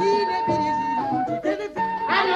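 A woman's strong, high singing voice in a traditional West African song over instrumental accompaniment, holding one long high note for about the first second before moving to lower notes.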